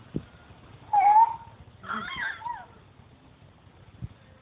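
Baby vocalising twice: a short, loud, high squeal about a second in, then a longer wavering squeal around two seconds in. There is a short click just after the start.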